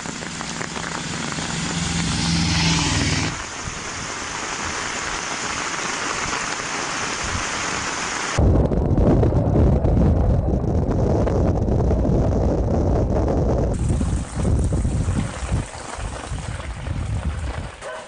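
Rain falling steadily on a road, a continuous hiss. About eight seconds in it changes abruptly to heavier wind-driven rain with a strong low rumble of wind on the microphone. The plain rain hiss returns near the end.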